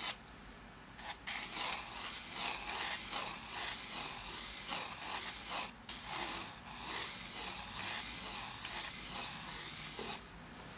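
Graphite pencil scratching on drawing paper in a run of quick curved strokes, sketching an oval; the strokes start about a second in and rise and fall in loudness.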